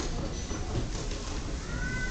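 Low murmur of a seated audience in a hall, with a short high-pitched squeal that rises and falls in pitch near the end.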